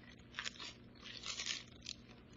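Pages of a Bible being leafed through by hand: several short, faint paper rustles as the pages turn.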